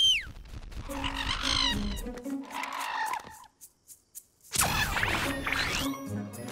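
A cartoon whistle held on one note that slides down and stops just after the start. Bird-like calls follow for about two seconds, then music comes in about four and a half seconds in.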